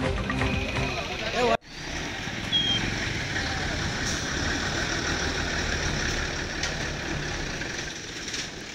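News music bed for the first second and a half, cutting off abruptly; then outdoor field sound of a crowd of men talking indistinctly over a steady background noise.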